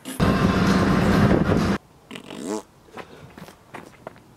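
A loud fart noise blown with the lips, a buzzing raspberry lasting about a second and a half that cuts off abruptly, followed by brief laughter.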